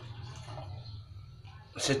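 Water poured in a thin stream from a plastic pot into a metal rice pot, a faint steady trickle that stops just before speech resumes near the end.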